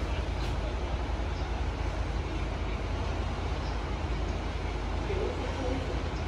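Steady low rumble of background noise in an open ground-floor lift lobby, with faint distant voices near the end.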